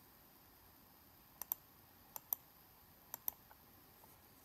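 Computer mouse clicks: three crisp double clicks (press and release) about a second apart, each entering another order on the trading platform and adding 100 contracts to the position.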